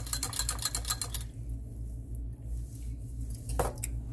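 Wire whisk clicking rapidly against the inside of a ceramic crock as a vinaigrette is whisked, about ten strokes a second, stopping about a second in. A single light knock follows near the end.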